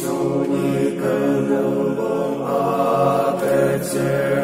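Slow unaccompanied hymn singing, moving from one long held note to the next with no instruments.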